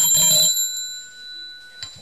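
Small brass hand bell rung once with a clear, high ringing tone that dies away over about two seconds and is cut off abruptly near the end. It is the chair's bell, rung to call the council to the vote.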